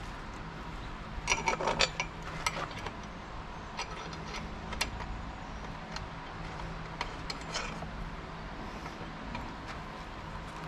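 Metal clinks and ticks of a wrench turning a nut onto a bolt through a steel mounting plate and bracket. There is a quick run of clinks about a second in, then single clicks scattered through the rest.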